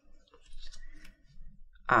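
Stiff paper index cards being lifted and flipped over by hand: quiet soft clicks and a light paper rustle.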